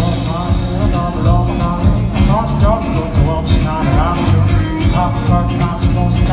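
Live indie rock band playing: drum kit keeping a steady beat under bass and two electric guitars, with a melody line that bends in pitch.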